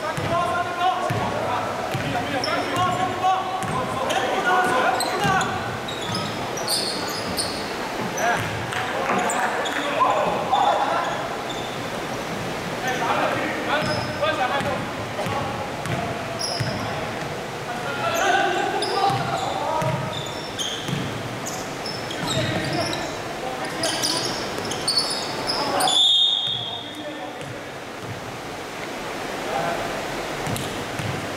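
A basketball bouncing on a gym floor during play, echoing in a large hall, with players' voices calling out. Near the end there is a short, sharp, high whistle blast.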